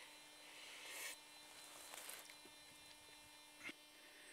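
Near silence: a faint rustle up to about a second in and a brief click near the end, over a steady faint hum.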